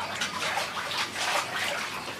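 Water splashing and sloshing in a plastic basin as hands work through it, picking out leaves and debris.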